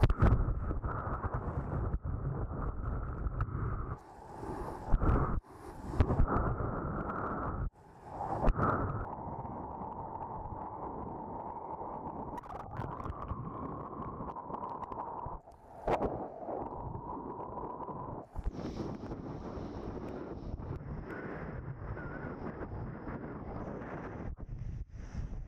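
Wind buffeting an action camera's microphone as a kiteboard rides across choppy water, with the rush of water under the board. The noise surges loudly a few times and cuts out briefly several times.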